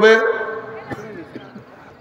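A man's loud preaching voice into a microphone holds the last word of a phrase, then trails off and fades away gradually, leaving only a faint background by the end.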